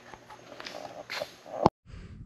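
Faint shuffling and handling noises, then a single sharp click about a second and a half in, followed by a brief dropout where the recording cuts to a new clip.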